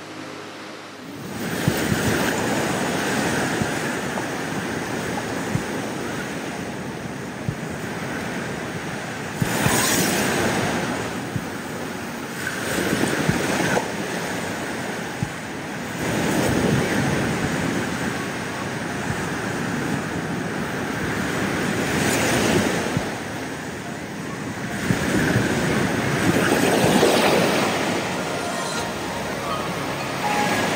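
Ocean surf breaking and washing up on a sandy beach, swelling and fading in surges every few seconds. It starts about a second in.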